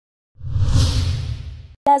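Whoosh sound effect: a swell of hiss over a deep low rumble that rises quickly and fades over about a second, cut off just before a voice starts speaking.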